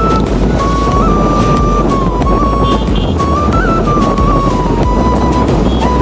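Background music with a single high melody line that steps up and down, over a steady low rumble and noise from the moving vehicle.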